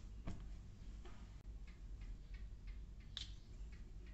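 Light ticks and clicks of a small perfume bottle being handled, with a short spray of perfume about three seconds in.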